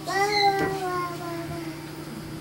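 A young child's long drawn-out vocal sound in bed, one held note that rises briefly and then slowly falls in pitch over about a second and a half.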